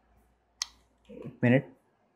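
A single sharp click of a computer key about half a second in, followed by a brief vocal sound from a man around the middle.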